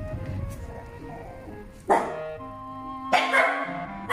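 Puppy barking in play-fighting: one sharp bark about two seconds in and a longer, louder bark about three seconds in, over light background music.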